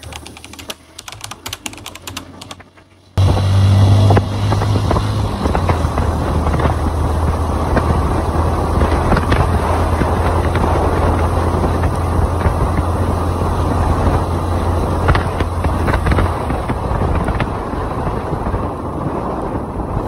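Crackling, clicking static for about the first three seconds, then a motorcycle engine suddenly comes in, running steadily under wind and road noise as it rides along; its low hum drops a little after about sixteen seconds.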